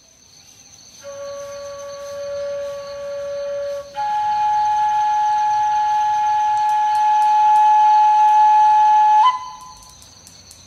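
A flute playing slow, long-held notes: a lower note held for about three seconds, then a higher note held for about five seconds, stepping briefly up near the end. A faint steady high-pitched tone sits underneath throughout.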